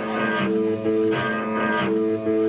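Electric guitar through an amplifier ringing out held chords, changing chord a few times, as a band plays between songs.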